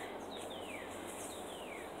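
Quiet outdoor ambience: a steady faint hiss with two faint falling whistled bird calls, one about half a second in and one around a second and a half.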